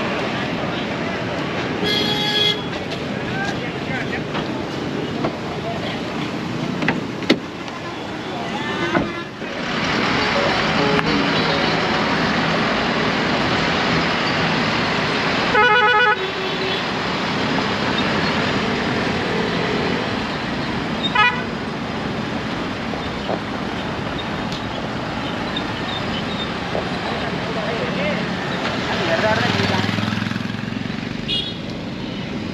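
Busy street traffic with vehicle horns: a short honk about two seconds in, a louder horn blast of about half a second near the middle, and a fainter honk a few seconds later.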